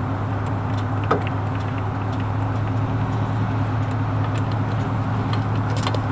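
A vehicle engine idling steadily with a low, even hum, with a few faint, scattered metallic clicks over it.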